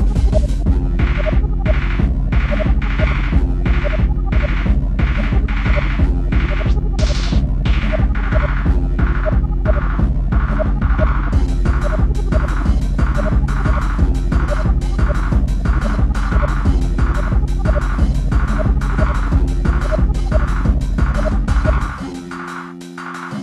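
Hard, fast electronic dance music in the free-party tekno style: a relentless pounding kick drum under a repeating bass riff and regular percussion hits. About halfway through, the higher percussion turns brighter.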